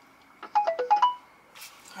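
A phone's electronic alert tone: a quick run of several short notes stepping up and down in pitch, lasting under a second, about half a second in.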